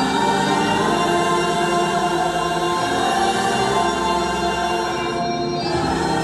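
Live worship music played over a stadium sound system, with many voices singing along in sustained chords, dipping briefly shortly before the end.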